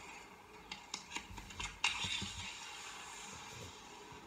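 Faint audio of a video clip playing through laptop speakers, with a few short clicks and knocks in the first two seconds.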